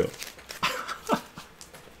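A man's soft, breathy laughter in a few short bursts, with a brief falling sound about a second in.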